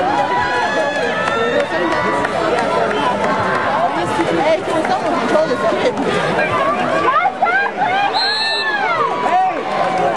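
A crowd of spectators shouting and yelling all at once, many voices overlapping, with a short, high whistle tone about eight and a half seconds in.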